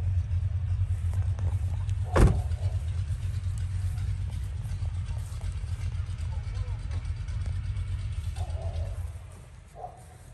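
A car engine idling, a low steady rumble that fades away near the end, with one sharp knock about two seconds in.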